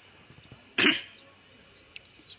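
A single short, loud vocal burst close to the microphone, about a second in, over faint open-air background.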